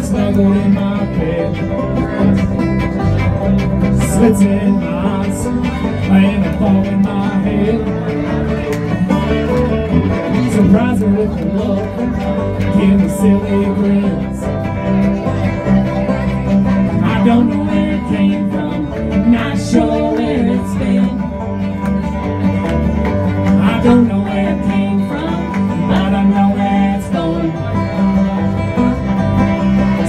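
Live bluegrass band playing: banjo, acoustic guitar, electric bass and fiddle together, with a steady bass line running throughout.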